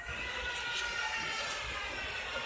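Steady background noise of a large store's sales floor, with the low rumble of a hand-held camera being moved about.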